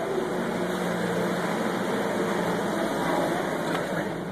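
Steady ambient background noise, an even low hum with hiss and no distinct events.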